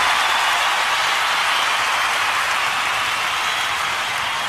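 A steady, even rushing noise with no tune or beat in it.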